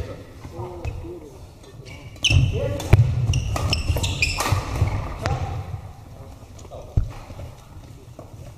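Badminton rally: rackets striking a shuttlecock in a quick series of sharp cracks over a few seconds, with one last hit about seven seconds in as the point ends.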